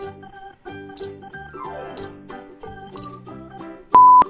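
Countdown timer sound effect: four sharp high ticks, one each second, over light, bouncy children's background music. A louder, steady beep starts right at the end as the countdown runs out.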